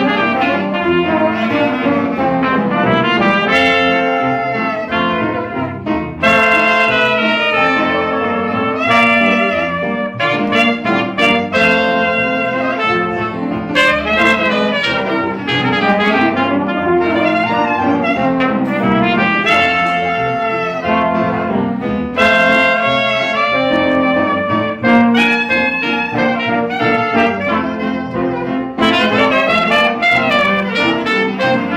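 Small jazz band playing live, with clarinet, trumpet and trombone leading over double bass and piano.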